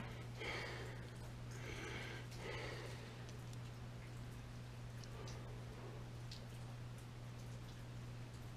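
Quiet room tone with a steady low hum, a few soft breaths early on, and a few faint small clicks about five to six seconds in as the cap of a small plastic super glue bottle is handled.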